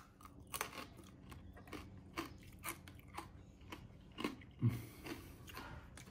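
Irregular small crunching clicks, roughly two a second, with a louder thump and a short rustle near the end.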